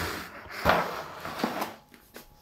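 A plastic snail tub being handled and shifted: a couple of short knocks, the loudest under a second in, with light rustling and scraping between them.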